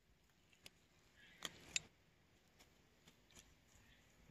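Near silence broken by a few faint clicks of tongs closing on and lifting a small dead animal off concrete pavement, the two clearest about one and a half seconds in.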